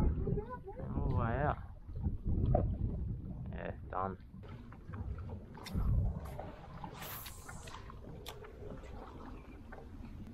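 Wind buffeting the microphone on an open boat, a low uneven rumble, with brief muffled voices in the first few seconds and a short hiss about seven seconds in.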